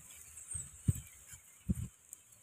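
A few dull, low thumps and knocks, about four, the loudest a pair near the end, as boards and stones are shifted by hand.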